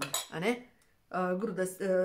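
A plate clinking as it is picked up and handled, alongside a woman's speaking voice.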